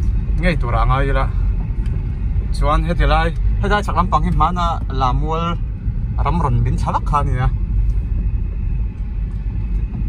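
Steady low rumble of a car in motion, heard from inside the cabin, with people talking over it for most of the time.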